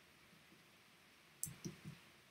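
Near silence, then three quick clicks close together about a second and a half in, the first the loudest.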